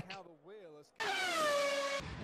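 Formula 1 car's V6 turbo-hybrid engine at high revs, cutting in suddenly about a second in and sinking slightly in pitch as the car goes by, over a hiss of wind and track noise. A faint voice comes just before it.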